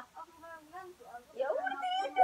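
Indistinct, quiet human voices talking in a small room, growing louder about one and a half seconds in, where a drawn-out, high-pitched voice sound is held.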